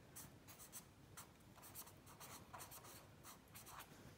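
Felt-tip marker writing on notebook paper: a quick run of short, faint strokes as a word is written out.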